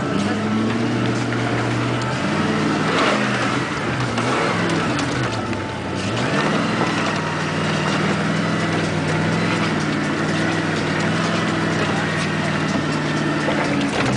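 4x4's engine heard from inside the cab while driving through mud. It revs down and back up about two to three seconds in and again around six seconds, then pulls at a steady pitch.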